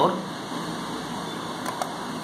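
Steady background hiss of room noise with no buzzer tone, the buzzer having just been switched off; a couple of faint clicks near the end.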